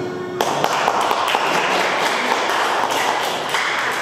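A crowd applauding: dense hand clapping begins suddenly about half a second in and stops abruptly near the end, with music heard briefly before it starts.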